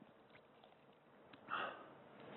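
Near silence, then about one and a half seconds in a short breath in or sniff at the microphone, taken by the speaker after a drink of water.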